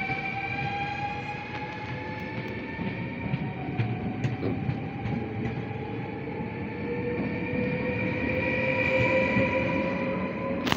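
Modernised NS VIRM double-deck electric train pulling away, its traction motors giving a whine of several tones that rises slowly in pitch as it gathers speed. Under it is the rumble of wheels on the rails, with a few sharp clicks about four seconds in, and the sound grows louder near the end as more carriages pass.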